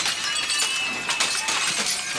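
Plate-glass shop windows being smashed: sharp cracks of breaking glass right at the start, again about a second in and near the end, with the tinkle of falling shards between.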